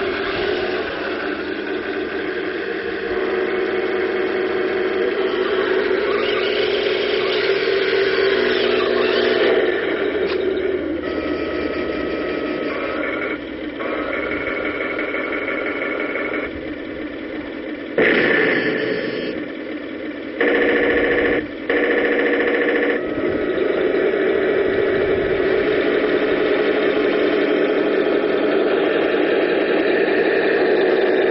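Tamiya 1/16 scale radio-controlled King Tiger (Tiger II) model tank driving, with a continuous mechanical drone and whine that shifts in pitch and level as it moves and turns. It grows louder in two short spells about two-thirds of the way through.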